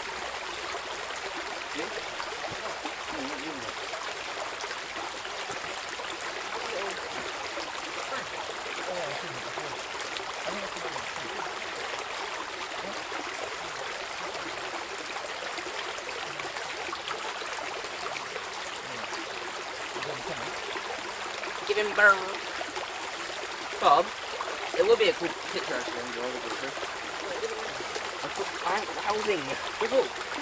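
Small woodland stream running steadily around fallen logs and branches, a constant trickling rush. A few brief louder sounds break in about two-thirds of the way through and again near the end.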